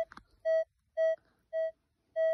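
Minelab Equinox 600 metal detector giving its target signal: three short, identical low beeps about half a second apart as the coil passes over buried metal.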